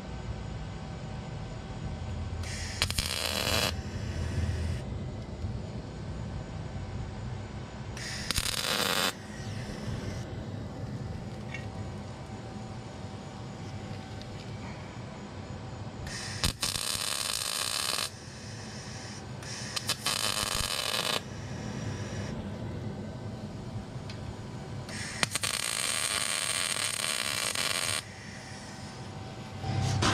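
MIG welder laying five short welds, each a burst of one to three seconds, the longest near the end, as a nut is tacked onto a steel trailer fender.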